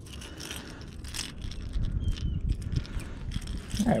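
Faint clicks and handling noises as the hooks of a fishing lure are worked out of a small bass's mouth, over a low steady rumble.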